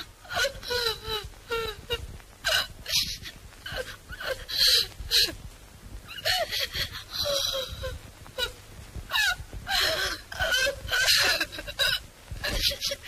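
A woman crying, sobbing and wailing in repeated bursts.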